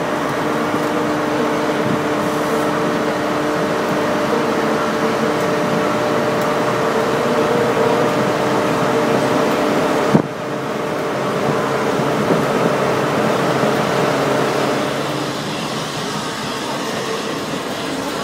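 Flying Scotsman, an LNER A3 three-cylinder steam locomotive, rolling slowly into the platform tender-first. The running sound is a steady hiss and rumble with a few steady tones beneath it, and there is a single sharp knock about ten seconds in.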